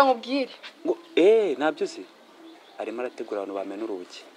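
Dialogue: a voice speaking, with a drawn-out rising-and-falling exclamation about a second in, then more speech near the end.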